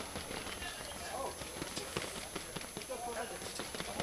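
Indistinct voices of people talking in the background, with many short, sharp clicks and taps scattered through.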